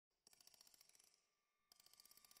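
Very faint run of quick, evenly spaced metallic ticks, about nine a second, over a light ringing tone, starting shortly in and again near the end: an edited intro sound effect.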